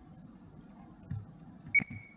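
A single short, high-pitched ping near the end, a sharp onset that rings briefly and fades, over faint room noise.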